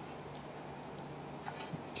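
Quiet steady low hum with a few faint light ticks as plastic tubing is handled against a metal panel.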